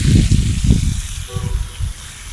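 A fountain's water jet hissing as it sprays into a pond, under a heavy, uneven low rumble that fades over the two seconds.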